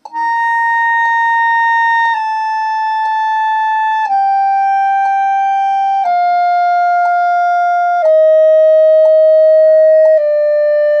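Clarinet playing a descending C major scale from high C in half notes, five steadily held notes, each stepping down about every two seconds. The upper-register notes are produced as overtones of the lower fingerings, without the register key. A metronome ticks once a second.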